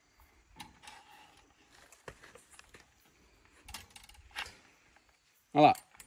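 Faint scrapes and small clicks of smooth steel fence wire being bent and wrapped by hand around a wooden fence post, a handful of light ticks spread over several seconds.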